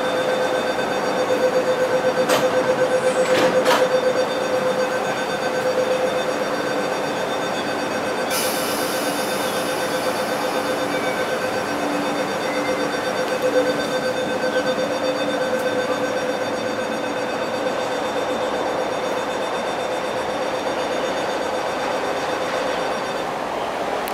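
East Rail Line electric train at the platform, with a steady hum throughout. Two sharp clicks come in the first four seconds, and a hiss sets in suddenly about eight seconds in.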